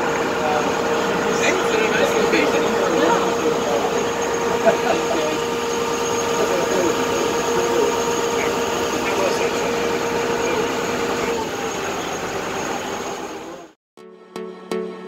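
Small boat's motor running steadily underway, with people's voices in the background; the sound drops out just before the end.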